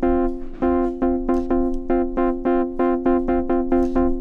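DRC polyphonic software synthesizer playing a house chord stab, one filtered chord struck over and over, about four to five short stabs a second, its filter cutoff turned low and a little sustain added.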